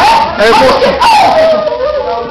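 Loud wordless vocal cries from young men, with a long howl-like call that falls in pitch about a second in.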